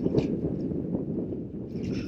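Wind rumbling steadily on the microphone.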